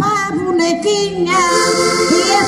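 A woman's voice singing a verse of a Portuguese cantar ao desafio into an amplified microphone. Two concertinas (diatonic button accordions) play along with steady held chords.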